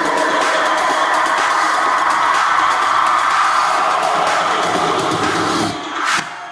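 Live techno DJ set over a festival sound system, in a build-up without kick drum or bass: a dense hissing wash with a held mid-pitched tone, thinning out just before the end.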